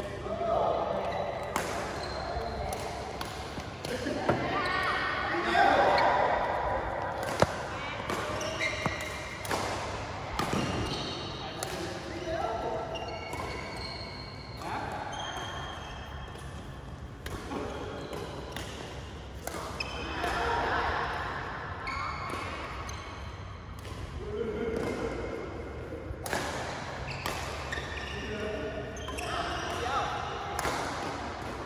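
Badminton rally in a large hall: rackets striking the shuttlecock in repeated sharp cracks, with short high squeaks of shoes on the court mat, echoing in the hall.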